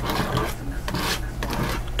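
Palette knife scraping and wiping paint off against plastic wrap laid over a palette, a dry rubbing scrape.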